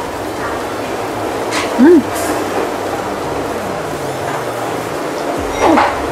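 A woman's short, closed-mouth "mm" of enjoyment about two seconds in, as she tastes a mouthful of ice cream. It sits over steady background noise from the open stall.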